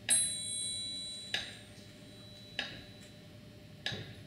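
Clock ticking slowly and evenly, four ticks about one and a quarter seconds apart. The first tick carries a brief high ringing tone.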